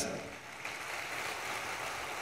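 Faint audience applause in a large hall: an even, finely crackling patter of many hands, swelling slightly near the end.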